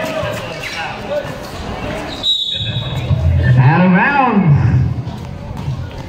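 A basketball bouncing on a concrete court amid crowd voices. About four seconds in, shouts from the crowd rise and fall in pitch.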